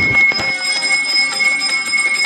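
Puja hand bell rung rapidly and continuously, a loud steady ringing with quick repeated clapper strikes, as is done during the aarti lamp-waving.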